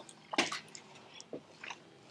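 People chewing bites of grilled ribeye steak, with scattered faint short mouth clicks.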